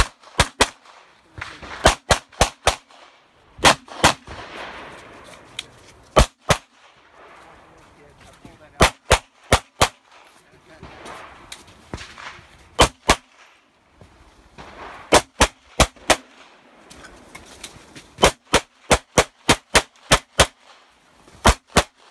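Glock pistol fired in rapid strings of two to ten shots, about three dozen in all, with gaps of a second or two between strings. This is the pattern of a timed USPSA course of fire, shooting at one position and then moving to the next.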